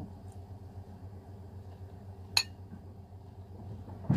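A single sharp clink of a metal fork against a plate a little past halfway, over a low steady hum.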